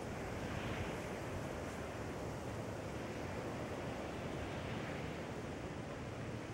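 Steady wash of surf on a beach, mixed with wind.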